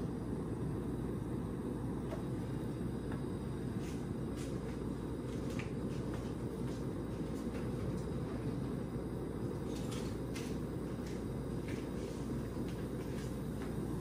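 Portable butane stove burner running steadily under a saucepan, with faint scattered ticks and crackles as dried anchovies dry-roast in the hot, dry pan.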